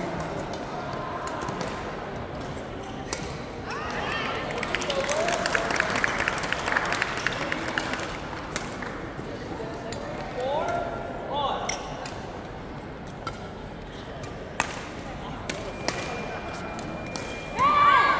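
Sharp, scattered hits of badminton rackets on shuttlecocks from several courts, over a steady murmur of voices in a large reverberant hall, with a few short calls or shoe squeaks.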